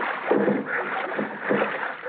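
Radio-drama sound effect of canoe paddles splashing and sloshing in water as the canoe is paddled off, heard on an old broadcast recording that cuts off the high end.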